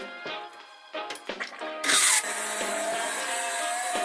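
An 800-watt electric stick (immersion) blender starts about halfway in with a sudden loud burst. It then runs steadily with a level whine as it purées chunks of cooked pumpkin in a stainless steel pot.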